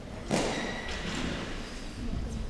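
A gymnast's body thuds onto a raised floor-exercise mat strip about a third of a second in, followed by a softer second thud shortly after, ringing on in a large sports hall.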